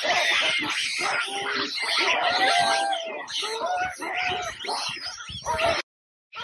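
A troop of baboons calling: many short overlapping calls in quick succession. The sound cuts off suddenly just before the end.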